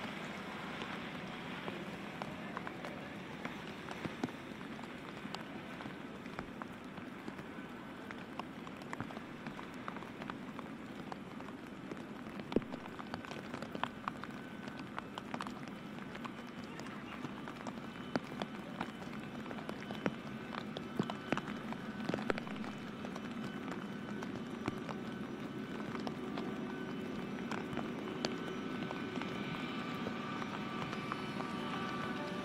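Steady rain hiss with scattered sharp raindrop taps. Under it, the faint, steady whine and rumble of a taxiing Boeing 757's jet engines grows a little louder in the second half.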